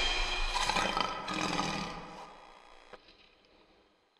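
A lion's roar sound effect over the tail of the intro music, fading away about two and a half seconds in.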